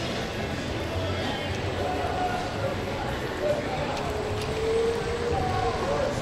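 Street ambience: indistinct voices of passers-by over a steady background of street noise.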